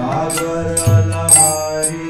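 Devotional mantra chanting: a man sings held notes into a microphone over a steady drone, with a bright metallic cymbal-like strike about every half second.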